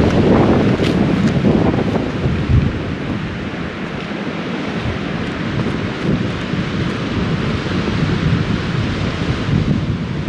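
Strong gusting wind buffeting the microphone, a loud low rumble that is heaviest in the first couple of seconds and then eases a little.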